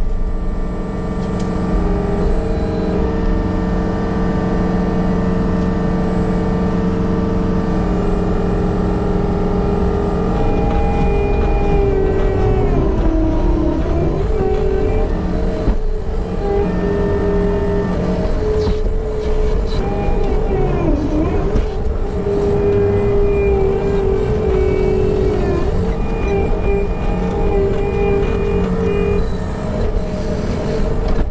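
Skid loader engine running steadily at working throttle, with a whine that comes and goes. Its pitch sags briefly twice as the loader works the bucket, scooping and dumping dirt into a dump trailer.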